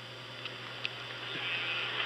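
Steady low hum under a faint hiss, with two faint ticks about half a second apart; the hiss grows slowly louder in the second half.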